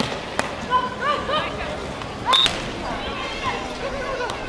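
Beach volleyball rally: a volleyball smacked by players' hands, three sharp hits, the loudest a little past halfway, among short shouted calls from players and spectators.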